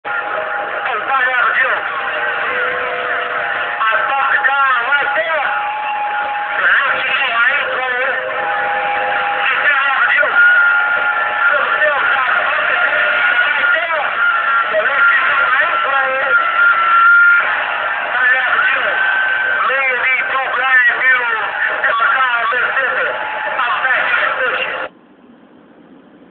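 Galaxy CB-style radio's speaker playing a strong, distorted radio transmission: garbled, overlapping voices with steady whistling tones laid over them. It cuts off sharply about a second before the end, as the transmitting station lets go of the key.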